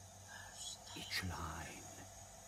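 A voice whispering a few words, with a sharp hissing sound just past the middle, over a faint steady hum.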